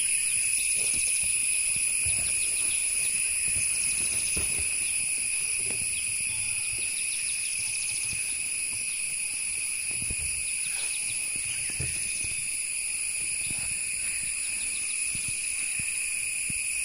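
A steady, high-pitched drone of forest insects, holding one shrill, unchanging tone, with a few faint low knocks now and then.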